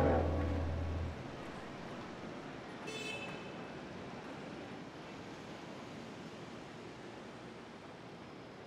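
The band's final note dies away, a low bass tone ringing on for about a second before cutting off. After that, faint outdoor city ambience with a brief distant car horn toot about three seconds in.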